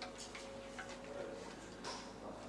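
A few short, light clicks over faint room noise, the clearest near the end. A faint steady hum fades out about halfway through.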